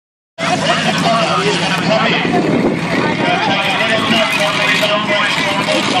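Monster truck's engine running steadily as it drives slowly, with voices mixed in.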